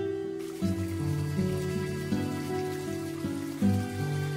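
Slow, sad background music of sustained notes. From about half a second in, a thin stream of water from a tap trickles steadily into a plastic basin beneath it.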